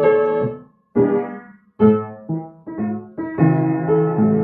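Piano playing a slow phrase of chords, each struck and left to ring. There are two short breaks, about a second in and just before two seconds. After that the chords come quicker, and a held chord rings near the end.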